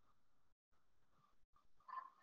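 Near silence: faint room tone, with a brief faint sound near the end.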